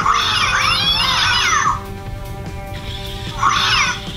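Grimlings 'Scaredy Cat' interactive toy, hung upside down, giving out its reaction: a high-pitched, warbling voice sound for nearly two seconds, then a shorter burst near the end. Background music plays underneath.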